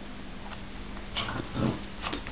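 A small dog makes a short, low vocal sound about a second in, over a steady low hum.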